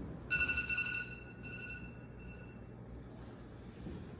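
Electronic tone from a mobile phone, a steady beep that starts about a third of a second in and is loudest for under a second. It then sounds again more faintly in short spells over the next two seconds, over a low room hum.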